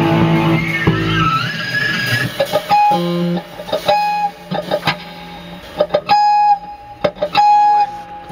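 A full-band rock chord rings out and stops about a second in. Then an electric guitar picks scattered single notes and ringing sustained tones, with a few sharp knocks in between.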